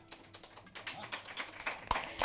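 Scattered hand claps from a small group, growing denser and louder toward the end.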